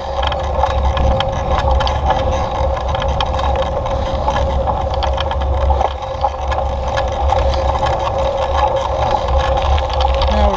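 A vehicle's motor running at a steady pitch while riding over a rough dirt trail, with low rumble and many small rattles and clicks from the bumps.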